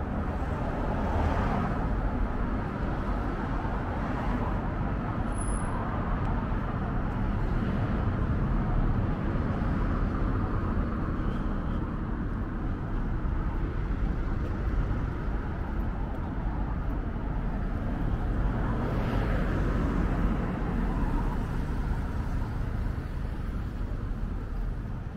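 Steady road traffic on a city street, with cars passing. The sound swells twice as vehicles go by close, about a second in and again later on.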